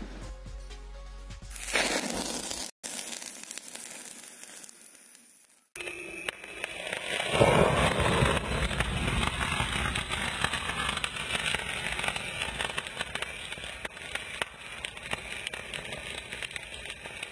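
Crackling, rushing flare-up of a burning potassium permanganate and glycerine mixture, fading over a few seconds. About six seconds in, it cuts suddenly to a long, dense rumble with crackle, a thunderstorm sound effect.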